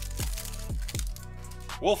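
Background music with a beat of deep bass hits that fall in pitch. Over it, a foil trading-card pack is torn open with a short crinkly rip near the start. A man's voice begins just before the end.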